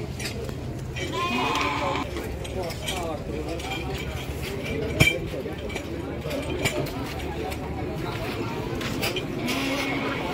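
A sheep bleating: one wavering call about a second in, lasting about a second, over the chatter of a crowd. A single sharp click comes about halfway through.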